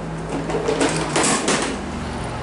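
Handling noise: rustling and light clinking as a metal screw-gate carabiner is picked up and handled with the thimbled end of a plastic-coated wire-rope cable.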